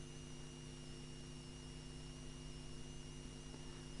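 Faint steady electrical hum made of several low tones, with a thin high whine above it: the background noise of the recording, with no other sound.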